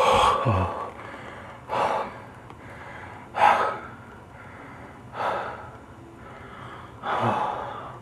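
Heavy, labored breathing: five loud gasps about every two seconds, over a faint steady low hum.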